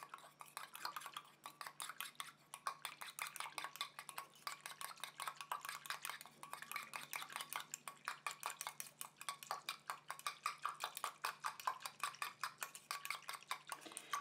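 Small wire whisk stirring in a stainless steel bowl, ticking lightly and rapidly against the metal, several ticks a second, while hyaluronic acid is mixed into a water and glycerin base.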